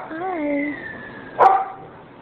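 Dog vocalizing: a short call that bends up and down in pitch, then one sharp bark about a second and a half in.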